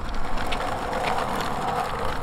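Kick scooter's small wheels rolling over rough concrete, a steady rolling rattle.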